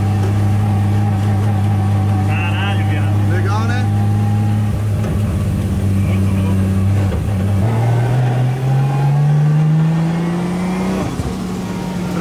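Nissan 350Z drift car's forged, turbocharged Toyota 1JZ inline-six heard from inside the cabin, running at a steady low engine speed under light throttle. A little past halfway the pitch steps up and rises steadily for about three seconds as the car accelerates, then levels off.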